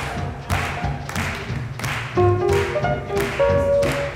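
Up-tempo swing music playing, sustained instrument notes over a sharp, regular beat of hits about twice a second.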